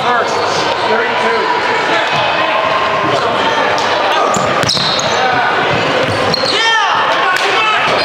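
Pickup basketball game in a large gym: a ball bouncing on the hardwood court and indistinct players' voices, with one sharp knock about halfway through and a few quick sneaker squeaks near the end.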